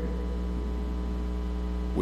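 Steady low electrical mains hum from the podium microphone's sound system, with fainter higher overtones above it.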